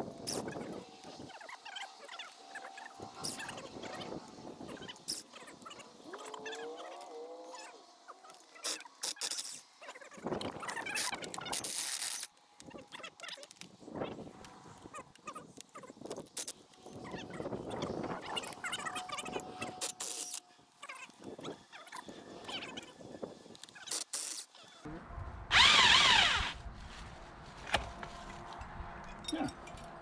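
Cordless drill with a socket spinning rusted flange bolts off the base of a fire hydrant in short runs. The loudest run is a wavering whine near the end, and there is a brief gliding squeal a few seconds in.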